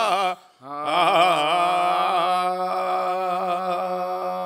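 A man's voice chanting an Urdu elegy (marsiya) for Imam Hussain. It breaks off briefly near the start, then holds one long, steady note.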